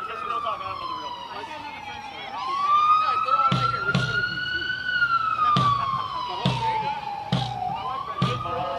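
A siren wailing, its pitch sliding slowly down, then up, then down again over several seconds. Music with a drum beat runs underneath.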